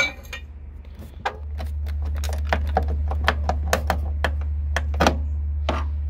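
Metal tools working a rusted, welded-on Jeep Cherokee XJ door check strap: a sharp metal knock at the start, then a quick run of light metallic clinks and knocks, a few a second. A steady low rumble sits underneath from about a second in.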